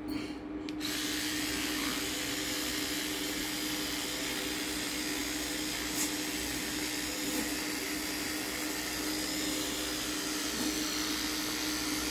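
Electric toothbrush with a round oscillating brush head running with a steady buzzing hum as it brushes teeth. A steady scrubbing hiss joins the hum about a second in.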